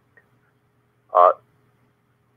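A single drawn-out man's 'uh', about a second in, in an otherwise near-silent pause over a faint steady hum.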